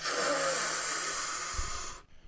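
A man's long, deep breath drawn in through the mouth: one continuous hiss about two seconds long that eases off slightly before it stops. It imitates someone drawing a whole cigarette down in one breath.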